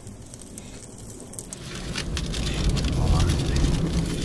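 Wood embers crackling under sausages grilling on skewers. About two seconds in, a louder low rumbling noise comes in beneath the crackle.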